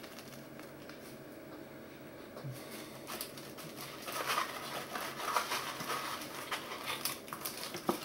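Paper tea bag, cardboard box and cellophane wrapper handled: soft rustling, then light crinkling and crackling from about three seconds in.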